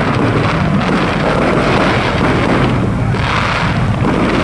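Fireworks going off in a continuous rapid crackle of pops and bangs, with a steady low rumble underneath.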